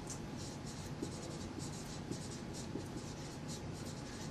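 Dry-erase marker writing on a whiteboard: a quick run of short, faint strokes as a word is lettered.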